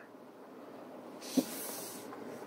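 Quiet cabin of a Volvo XC90 T8 plug-in hybrid standing with its petrol engine running to charge the battery. A soft hiss comes in just past halfway, with one brief low knock.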